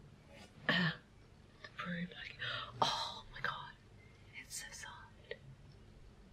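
A woman's breathy whispers and gasps, in short scattered bursts, with one brief click about three seconds in.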